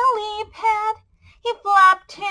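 A woman singing a children's song unaccompanied, in long held notes, with a short break about a second in before the next line.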